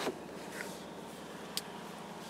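Quiet, steady background noise inside a car's cabin, with a single faint click about one and a half seconds in.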